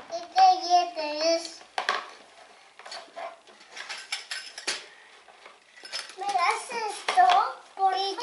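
Young children's voices, with the clicking and clattering of plastic toy pieces being rummaged through in a toy doctor's kit case in between their words.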